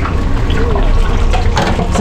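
Battered food frying in the hot oil of a chip-shop frying range: a steady bubbling sizzle over a loud, steady low rumble.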